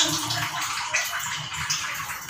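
Kitchen tap running into the sink while dishes are washed by hand, with a few light clinks of dishes.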